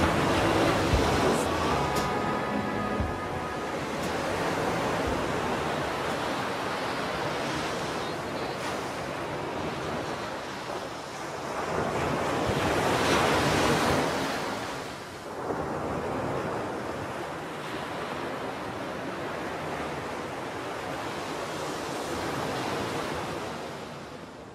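Ocean surf: waves breaking and washing up a beach, rising and falling in slow swells, with one louder swell about 13 seconds in. The last notes of the song fade out in the first few seconds.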